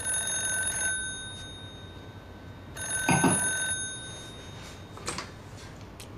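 Telephone ringing twice, each ring about a second long, then a short click near the end as the handset is picked up.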